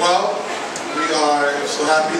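A man speaking into a microphone, his voice carried over the hall's loudspeakers.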